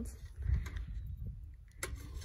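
The sliding glass draft-shield door of a Mettler Toledo analytical balance being handled and shut, with a single sharp click just before the end, over a low rumble.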